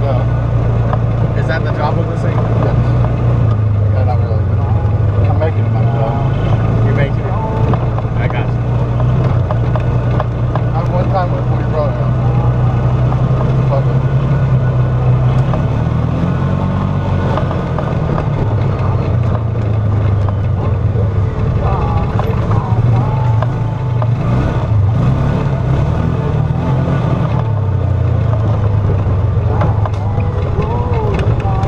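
Off-road vehicle engine running steadily as it drives along a rough dirt trail, heard from inside the vehicle, its pitch dipping and rising briefly about halfway through with throttle changes. Scattered rattles come from the ride over the bumps.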